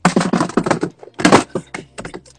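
A quick run of clicks and knocks from handling close to the microphone, mixed with short wordless vocal sounds; the loudest comes a little past halfway.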